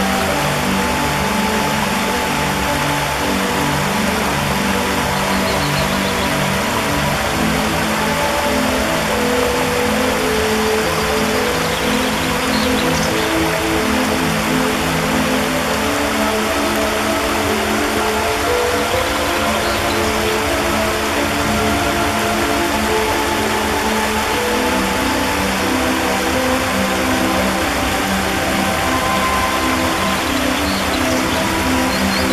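Water rushing over stones in a shallow rocky stream, a steady hiss, mixed with soft ambient music of long held low notes that change pitch every few seconds.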